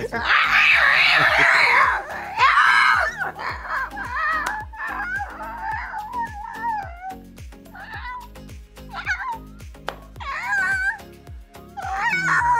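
A person imitating cats mating: a loud screeching yowl for the first two seconds, then wavering, drawn-out cat-like wails, over background music with a steady beat.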